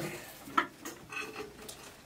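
Handling noise from audio gear: a few sharp clicks and light knocks, the loudest about half a second in, as a cable is plugged into a telephone-handset microphone on its stand.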